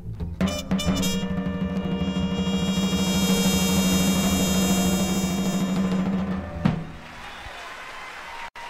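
A live jazz quintet (trumpet, alto saxophone, piano, bass and drums) closing a tune: a few drum hits, then one long held final chord with drums underneath, cut off by a last hit about six and a half seconds in. The audience's applause follows, much quieter.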